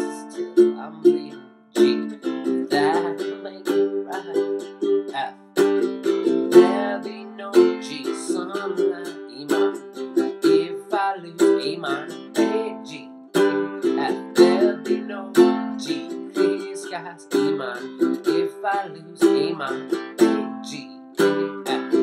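Ukulele strummed in a steady rhythm, ringing chords changing every few seconds, played close up in a small room.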